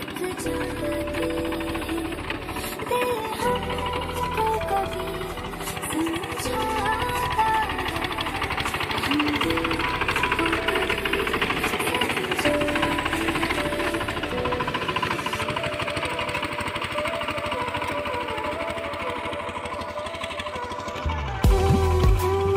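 Single-cylinder diesel engine of a VST Shakti 13 DI power tiller running under load with a rapid, even chugging, over background music. The engine gets louder and deeper near the end.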